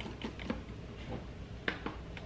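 Plastic clicks and knocks of a personal blender cup, blade attached, being seated and twisted onto its motor base, with two sharper clicks near the end.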